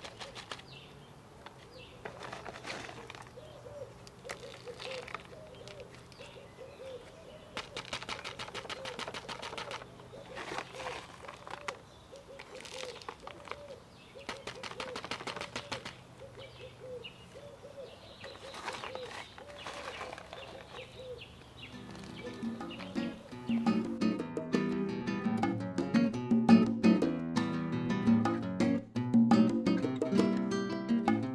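Bark chips rustling and crunching in short bursts as hands pack them into a plastic orchid pot, with a bird cooing over and over in the background. About three-quarters of the way in, guitar-led jazz samba background music comes in and becomes the loudest sound.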